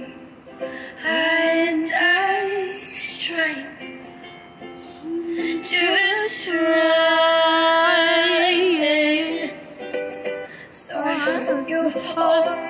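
A young woman sings over a ukulele accompaniment, with one long note held with vibrato midway through.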